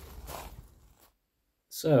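Low outdoor background noise with a soft rustle, which cuts off to dead silence about a second in. A man's voice starts near the end.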